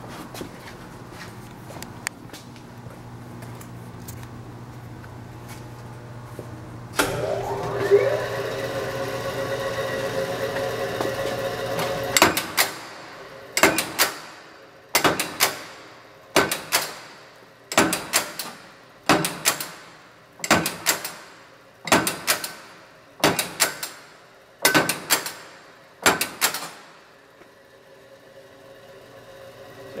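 1965 Bliss 22-ton OBI punch press: its motor starts about seven seconds in with a rising whine and settles to a steady run. From about twelve seconds the press strokes about eleven times, each stroke a sharp double clank that rings off, about 1.4 seconds apart, single hits because it is set to non-repeat, one hit per push of the pedal.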